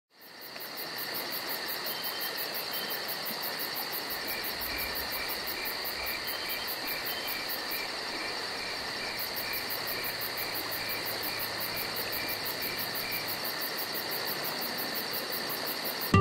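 A night chorus of crickets and other insects, fading in at the start and then steady, with a fast pulsing trill high above it. From about four seconds in until near the end, a short chirp repeats about twice a second.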